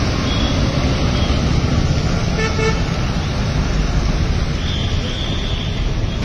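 Busy road traffic: cars, a truck and motor scooters running past, with short vehicle horn beeps about halfway through and again near the end.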